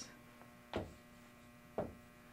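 Steady low electrical hum, with two short marker strokes on a whiteboard about a second apart.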